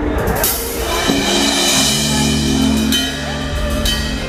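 Live rock band playing through a PA: drum kit with a cymbal crash about half a second in, electric guitars and keyboard, with held low notes coming in about two seconds in.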